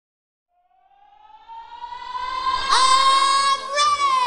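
Siren-like synthesizer tone in the build-up of an electronic dance track. It fades in out of silence, rises slowly in pitch, and then holds steady with a brief chirp partway through.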